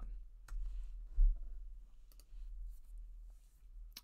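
A few separate computer keyboard and mouse clicks, with a louder dull low thump about a second in.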